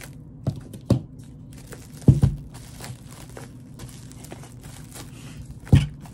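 Plastic wrap crinkling as it is cut off and pressed down around a bubble-wrapped package, with a few sharp knocks and thumps, the loudest about two seconds in and another near the end.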